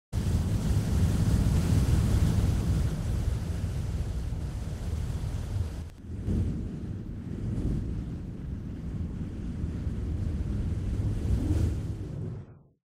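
A steady, low rumbling roar of noise like wind or surf, cutting out for a moment about halfway through and then building again.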